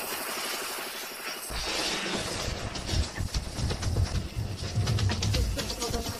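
Anime sound effect of a wand being scraped against the ground at tremendous speed to make fire by friction: a rushing hiss, then a low rumble and a fast run of sharp scraping clicks from about halfway in.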